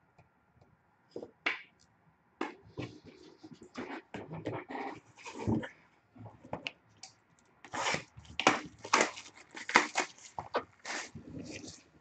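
Cardboard handling noise as an Upper Deck hockey card box is taken from its case and set on a glass table: scattered rustles, scrapes and sharp knocks, busiest and loudest in the last four seconds.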